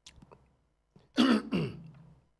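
A man clears his throat close to the microphone: one harsh burst about a second in, followed by a smaller one.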